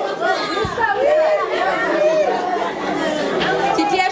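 Chatter: several people talking over one another.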